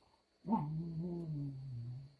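A dog's play growl during rough wrestling: one long, low growl that starts sharply about half a second in, then holds and sinks slightly in pitch.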